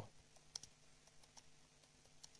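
A few faint, scattered clicks of a computer keyboard being typed on, over near silence.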